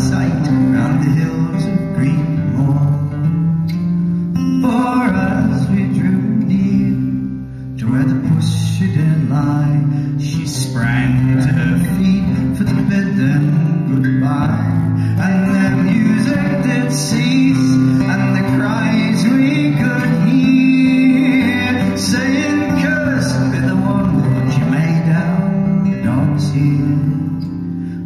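Solo acoustic guitar fingerpicked in an instrumental passage of a folk song, with picked melody notes over a bass line and a brief softening about seven seconds in.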